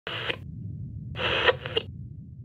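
Channel logo intro sound effect: two short bursts of hissing noise, the second ending in a few clicks, over a low hum.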